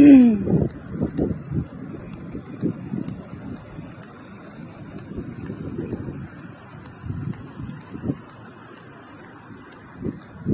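A single cough near the start, then wind rumbling irregularly on a handheld phone microphone carried at walking pace, loudest in the first couple of seconds and easing after that.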